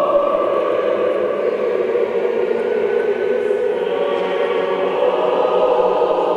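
Church choir singing Orthodox liturgical chant in long held notes, the chord shifting about four seconds in.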